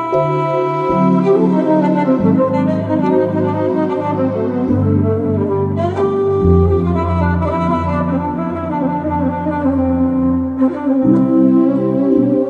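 Violin playing a Romanian doina melody over electronic keyboard accompaniment with held bass notes and chords.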